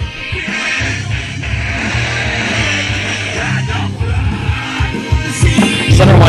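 Music with a strong bass line playing through the speakers of an Aiwa DS-50 surround sound system.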